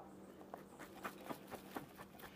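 Salad shaking out of an upturned glass mason jar onto a dinner plate: several faint soft taps and rustles over a faint low hum.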